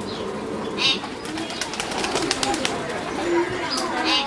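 A flock of domestic pigeons cooing while they feed, with many quick sharp ticks through the middle as they peck at grain.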